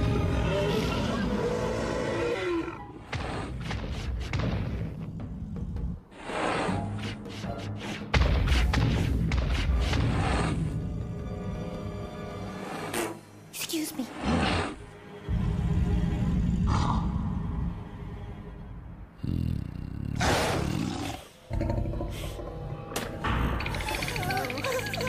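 Cartoon dinosaur roaring and snarling, several times with short pauses between, over dramatic orchestral film music.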